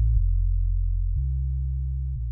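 Low sustained synthesizer bass tones from a house track, each held about a second before stepping to a new pitch, slowly fading out in the track's outro.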